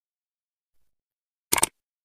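Silence, then about one and a half seconds in a quick double click, the mouse-click sound effect of a subscribe-button animation.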